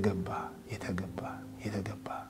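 A man speaking quietly, close to a whisper, in short broken phrases, with a faint steady held tone underneath.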